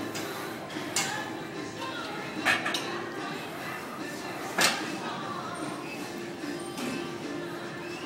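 Metal weight plates clinking a few times, loudest about four and a half seconds in, over gym background of indistinct voices and music.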